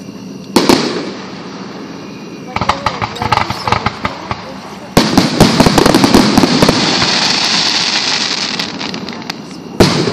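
Aerial fireworks going off. There is a sharp bang about half a second in and a patter of smaller pops around three to four seconds. A big burst at five seconds is followed by several seconds of dense crackling that slowly fades, and another sharp bang comes near the end.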